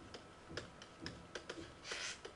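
Faint, irregular taps and scratches of a stylus writing on a pen-tablet screen.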